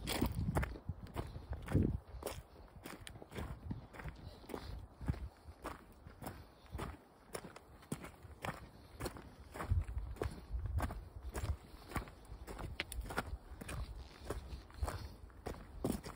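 Footsteps on a loose gravel path at a steady walking pace, about two steps a second, with a low rumble coming and going near the start and again about two-thirds through.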